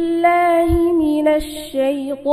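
A boy's melodic Quran recitation (tilawat), one long held note for about a second and a half that then steps down to a lower pitch near the end.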